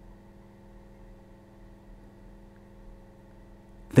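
Quiet background music: a soft, steady sustained chord holding unchanged under a pause in the narration.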